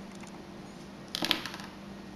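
Small screwdriver working a tiny screw in a Canon S100 camera body: a brief cluster of faint metallic clicks and scrapes about a second in, over quiet room tone.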